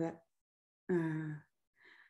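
A woman's voice: a drawn-out syllable trailing off, a short held vocal sound about a second in, and a soft breath near the end.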